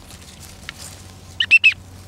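Three quick, high duck calls close together about one and a half seconds in.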